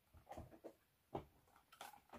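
Faint handling noise: a few soft knocks and rustles of small cardboard perfume boxes being set down and picked up, the clearest a little past one second in.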